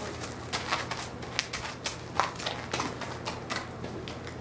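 Horse's hooves stepping on gravel and packed dirt: a string of irregular sharp clicks and crunches, the loudest about two seconds in.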